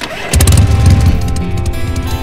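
Motorcycle engine starting and then running with a deep, loud rumble from about a third of a second in, the throttle being twisted. Background music plays over it.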